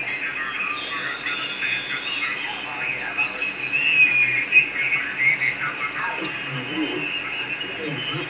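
Loudspeaker audio of a homemade QRP transceiver being tuned down the 80 m band in lower sideband: hiss, whistling tones that step and glide in pitch, and snatches of garbled sideband voices.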